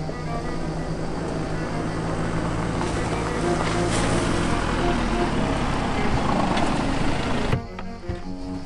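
Audi estate car driving up, its engine and road noise growing louder over background music, cutting off abruptly near the end.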